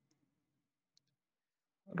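Faint clicks of a computer mouse, a couple of them about a second apart, over near silence.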